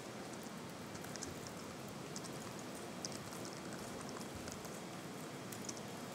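Faint, irregular clicks of laptop keyboard keys being typed, over a steady room hiss.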